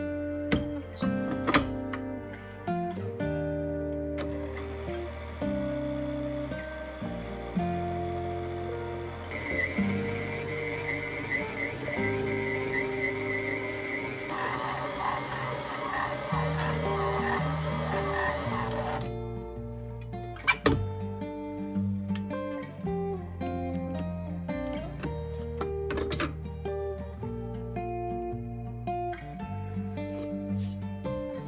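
Acoustic guitar background music, with a stand mixer's motor running under it from about four seconds in until it cuts off near nineteen seconds, as its dough hook kneads bread dough; the motor sound gets stronger twice along the way.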